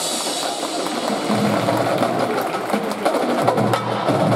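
A drum corps percussion section playing a fast, dense passage of drum strokes on snare and bass drums, over some held pitched notes.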